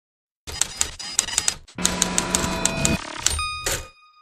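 Logo intro sound effect: a clattering run of sharp clicks, about five a second, in two runs with a brief break. Near the end a bright bell-like chime of several tones rings on.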